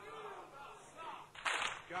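A short pause in a man's recited poetry: faint low sounds, then one short, sharp noisy burst about a second and a half in, just before his voice returns.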